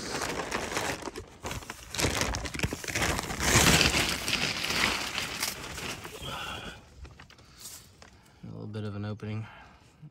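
Plastic tarp crinkling and rustling, loudest about four seconds in and dying down after about seven seconds. A short voice follows near the end.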